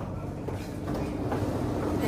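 Interior of a Singapore MRT Circle Line train car: low steady rumble of the train with a faint steady hum as it comes into a station and stops.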